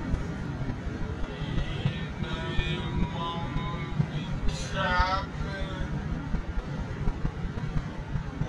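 Steady low road and wind rumble of a car driving along. A wavering, voice-like pitched sound comes and goes over it, loudest about five seconds in.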